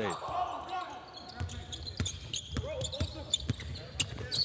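Basketball dribbled on a hardwood court, about two bounces a second from a little after the start, with faint voices on the court.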